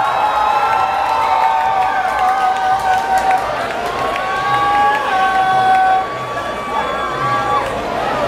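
Nightclub crowd cheering and screaming, with several long, high cries held steady for seconds at a time.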